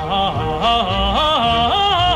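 An operatic voice singing a florid passage with vibrato, stepping quickly up and down between notes, over orchestral accompaniment.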